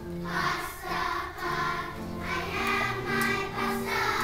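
Children's choir singing together, moving from one held note to the next.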